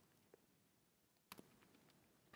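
Near silence: room tone, with a faint laptop key click a little over a second in and a fainter tick earlier.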